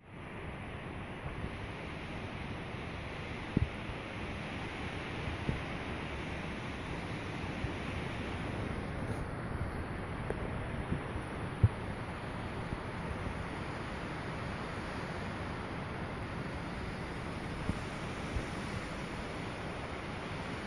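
Wind noise on the microphone: a steady rushing hiss, with a few faint clicks.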